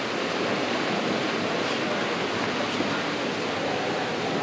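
Steady rushing of river water flowing over rocks in a canyon, an even wash of noise with no break.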